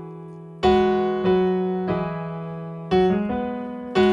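Solo electric piano (digital keyboard) playing slow held chords, each struck and left to ring and fade before the next, about five new chords over the few seconds.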